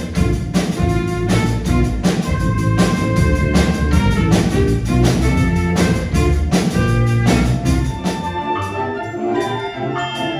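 School jazz band playing live: saxophones and trumpets over a drum kit keeping a steady beat. About eight seconds in, the drums and bass drop out and the music thins.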